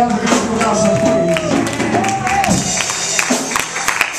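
Live gospel music: a man's voice singing long held notes through the church PA over band accompaniment, with sharp percussive hits scattered throughout.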